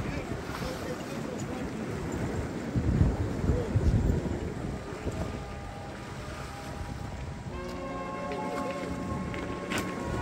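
Wind buffeting the microphone over small waves washing against the jetty's rocks, with the strongest gusts about three to four seconds in.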